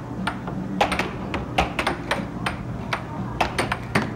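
Air hockey puck clacking sharply and irregularly against plastic mallets and the table's rails during fast play, over a steady low hum.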